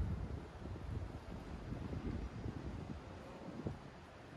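Gusty wind buffeting the microphone, a low uneven rumble that rises and falls, from a wind strengthening ahead of an approaching typhoon. A short knock near the end.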